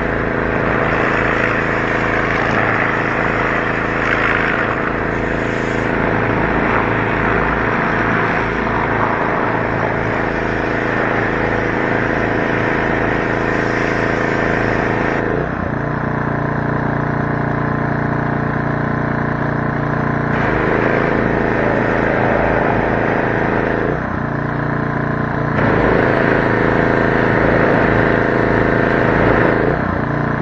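Garden hose nozzle spraying water onto a tractor: a steady hiss of spray over a low, steady hum, both shifting abruptly several times as the flow or aim changes.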